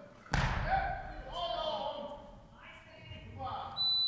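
A thump on the weightlifting platform as the lifter drives the barbell up in the jerk, followed by voices shouting. Near the end a steady, high electronic beep starts, the down signal for a completed lift.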